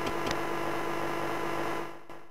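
Steady electrical hum under a static hiss, with a couple of faint crackles just after the start, fading away near the end.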